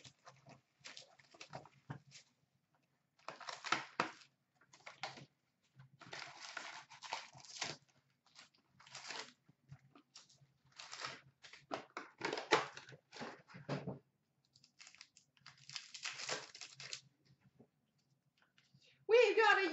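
A hockey card box and its packs being torn open by hand: irregular bursts of tearing and crinkling wrapper, with cards being handled.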